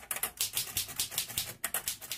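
Typewriter keys clacking in a quick, irregular run of strokes, used as an intro sound effect.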